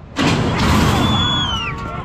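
Metal horse-racing starting gate springing open with a sudden loud clash about a quarter second in as the horses break out, followed by shouting and a high falling whistle.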